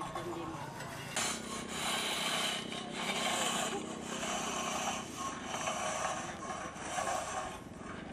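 Metal-tined rakes drawn through a layer of paddy rice grain spread to dry on concrete. The scraping swishes come in strokes about once a second, starting about a second in.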